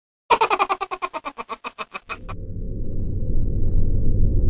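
Cartoon sound effects: a fast run of clicks that fades out over about two seconds, then a low rumble that swells steadily louder.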